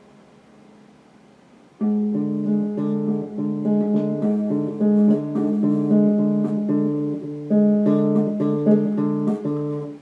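Electric guitar playing a melodic line of ringing single notes, about two a second. It is faint at first, comes in loud about two seconds in, and cuts off suddenly at the end.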